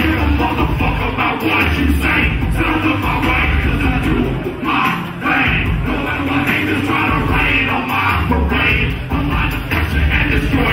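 Live hip-hop set: a loud beat with heavy, recurring bass played over a club sound system, with a rapper's vocals on the microphone.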